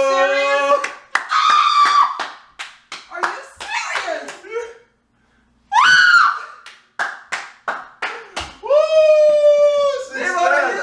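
People whooping and yelling in celebration, with long drawn-out shouts at the start and near the end and a high rising shriek with laughter about six seconds in. Sharp hand claps are scattered throughout.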